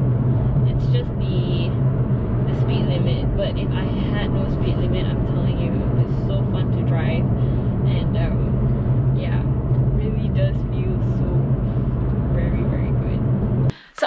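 Steady in-cabin drone of a 2019 Aston Martin DB11 V8 cruising on the road: a low hum from its 4.0-litre twin-turbo V8 under tyre and road rumble. It cuts off suddenly just before the end.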